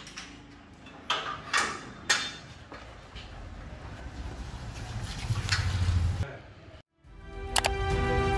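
Metal door latch and bolt clicking and clanking three times as a wooden door and metal gate are opened, followed by a low rumble that builds for a few seconds and then stops. Music with chiming notes starts near the end.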